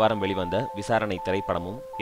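A man narrating in Tamil, continuously, over background music with two steady, held tones.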